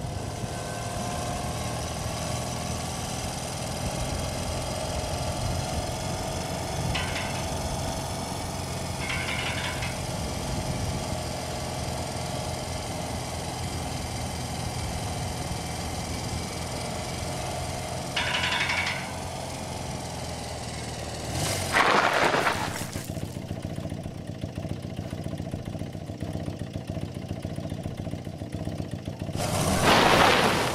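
Motorcycle engine running steadily, with louder noisy surges about two-thirds of the way through and again near the end.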